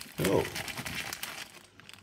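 Plastic bubble mailer and a small plastic bag of transistors crinkling as a hand pulls the bag out of the mailer, the rustle dying down near the end.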